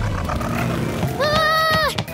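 Cartoon motorcycle engine sound effect: an engine note sliding down in pitch and then running steadily. Near the end comes a held, voice-like tone that falls away as it stops.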